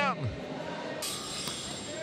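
A commentator's laughing voice trails off, then steady indoor arena ambience: a hiss that turns brighter about a second in.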